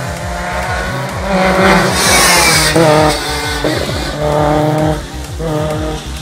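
A rally car's engine revving up as it approaches at speed, peaking in a loud rushing hiss as it passes about two seconds in, then carrying on at high revs as it goes away. Electronic music with a steady beat plays underneath throughout.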